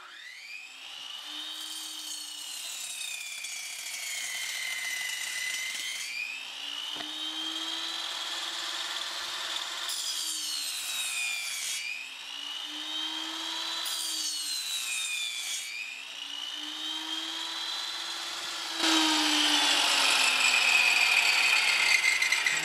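Benchtop table saw running and cutting through hardbound encyclopedia books. The motor's whine sags in pitch each time the blade bites into the paper, several times over, and picks back up as each cut clears. About three seconds before the end, a louder, rougher cutting noise comes in.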